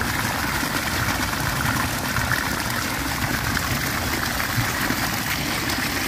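Muddy floodwater rushing steadily into a mesh net held open by a bamboo frame, a constant, even splashing flow.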